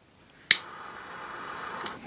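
A lighter clicks once about half a second in, lighting a Campingmoon canister gas lantern. The lantern's gas flame then hisses steadily, slowly growing louder.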